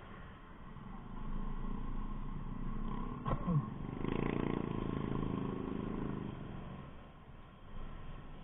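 Motorcycle engines on a street at low speed: the scooter's own engine running under light throttle while another motorcycle's engine swells louder about four seconds in and fades by near the end. A short sharp knock sounds just after three seconds.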